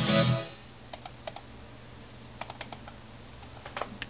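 The last of a children's song with singing and plucked guitar, which stops about half a second in. It is followed by scattered light clicks of computer keys, a few at a time.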